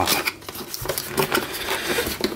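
Cardboard packaging scraping, rubbing and knocking as a boxed NVR recorder is worked out of a tight-fitting box: a run of short scrapes and taps.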